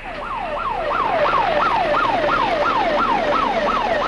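Emergency vehicle siren in a fast yelp: a repeating sweep, each rising sharply and then falling, about three a second, typical of a fire-rescue ambulance running with lights and siren.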